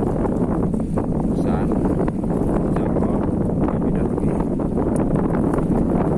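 Strong wind buffeting the microphone, a steady low rumble that drowns out most of a man's voice talking under it, so the speech comes through faint.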